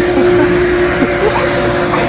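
Steady machinery hum in a large warehouse: one constant low tone over a loud, even rushing noise.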